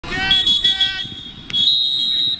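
A whistle blown on a football field: a few short blasts in the first second, then one longer steady blast starting about one and a half seconds in, with a voice shouting under the first blasts.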